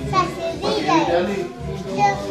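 Children's voices and chatter over music playing in a small room.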